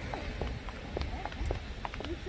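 Footsteps of several people walking on pavement, a quick uneven patter of short sharp steps over a steady low rumble.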